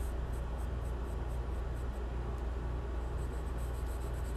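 Charcoal pencil scratching on sketchbook paper in short, quick shading strokes, about four or five a second, pausing briefly partway through. A steady low hum runs underneath.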